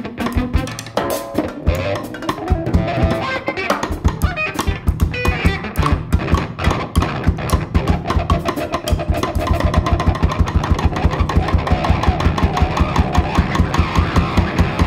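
Instrumental band music driven by a busy drum kit, with guitar underneath. From about halfway in, the drums settle into an even, fast pulse of about four hits a second.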